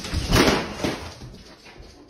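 A tall floor mirror toppling over and hitting the wooden floor with a loud bang about half a second in, a smaller knock just after, then the sound dies away.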